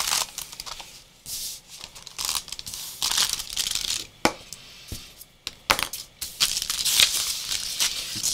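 Paper and tissue paper rustling and crinkling in irregular bursts as sheets are handled and smoothed by hand, with a few sharp clicks or taps in the middle.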